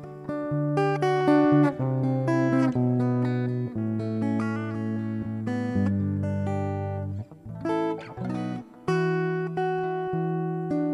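Electric guitar played through a Zoom G1 multi-effects pedal's acoustic guitar simulator, finger-picked chords and single notes ringing out with an acoustic-like tone, with two brief breaks in the second half.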